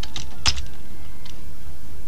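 A few computer keyboard keystrokes, sharp short clicks with the loudest about half a second in, over steady background music.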